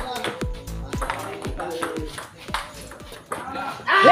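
Table tennis rally: the celluloid ball clicking off bats and table about twice a second, under background music with a steady beat and a held melodic line.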